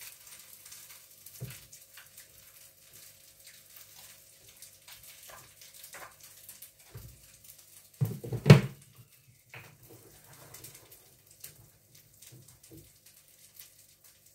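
Foil wrapper of a bouillon cube crinkling faintly as it is unwrapped by hand, then a loud knock about eight seconds in.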